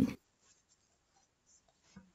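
The last syllable of a woman's spoken question cuts off just after the start, followed by near silence with only faint room noise and a few faint scratchy sounds.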